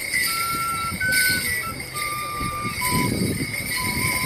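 A small whistle pipe plays a jig tune in clear single notes, while Morris bell pads strapped to the dancers' legs jingle with their steps and leaps.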